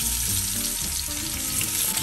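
Raw potato pieces sizzling in hot sunflower oil in a skillet, just after being added to the pan: a steady, dense hiss of frying.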